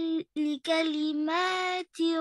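A child's voice chanting Quranic Arabic in the tajweed style, holding long level-pitched vowels broken by short pauses: the stretched madd vowels of a Qaidah reading drill.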